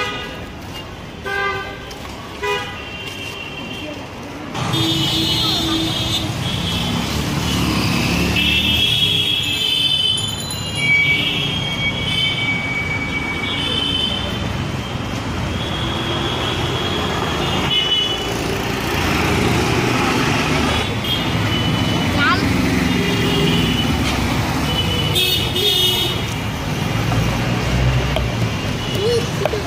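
Busy city street traffic noise with frequent short horn toots, louder from about four seconds in, with people's voices mixed in.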